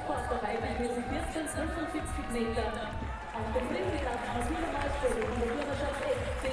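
Stadium ambience: music and an announcer's voice over the public-address system, with crowd noise underneath.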